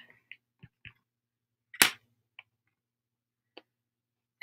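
Paint markers being handled on a tabletop: a few faint taps and one sharp click a little under two seconds in.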